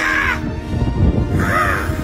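Two short, harsh bird-like calls from a man acting as a hatchling bursting out of a giant egg, each call rising and falling in pitch, one at the start and one past the middle. Music with a heavy low beat plays underneath.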